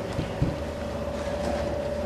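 Steady background machine hum with a low rumble, and a light knock about half a second in.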